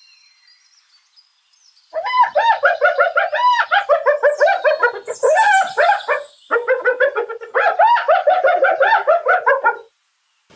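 Spotted hyena giggling: a rapid string of short, high, rising-and-falling notes that starts about two seconds in, breaks off briefly past the middle, then carries on until just before the end.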